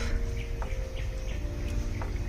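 Birds chirping faintly now and then, over a low steady rumble and a faint hum of a few steady tones.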